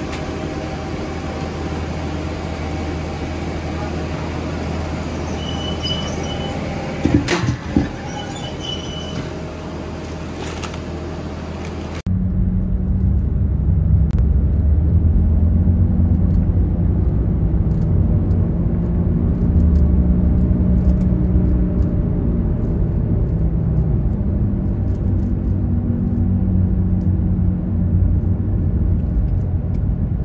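Steady low hum of workshop machinery with a couple of sharp knocks and a few short high beeps. About twelve seconds in it cuts to a louder low rumble of a car driving in city traffic, which runs steadily to the end.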